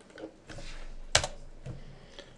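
Computer keyboard and mouse clicks as a command is pasted and entered: one sharp click about a second in, then a few faint taps.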